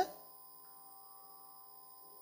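Faint, steady electrical hum, made of several constant tones, with the last bit of a man's spoken word right at the start.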